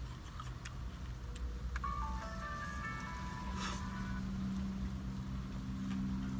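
A short electronic jingle, a run of clear stepped high notes lasting about two seconds, plays over a steady low hum. A deeper steady tone comes in midway.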